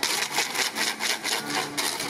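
Wooden hand percussion scraped or struck in a fast, even rhythm, about seven strokes a second, with a faint fiddle-like tone underneath.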